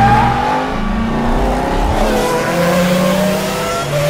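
Race-car sound effect laid over a toy car drifting: an engine revving with tyre squeal, the engine note climbing in the second half.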